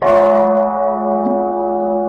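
A bell struck once at the start, its ring sustaining in steady tones under background music.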